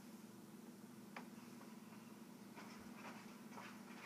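Near silence: room tone with a faint steady low hum and a single faint click about a second in.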